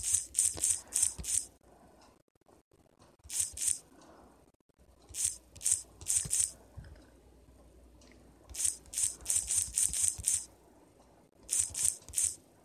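Computer keyboard typing in several short runs of rapid key clicks, with quiet gaps between the runs.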